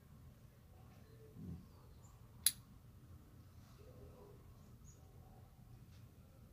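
Quiet pipe smoking: a soft low puff about a second and a half in, then a single sharp click a second later, over a faint steady low hum with a few tiny high chirps.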